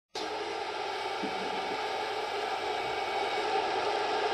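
Steady, even background noise, like a hiss, with no clear pitch or rhythm.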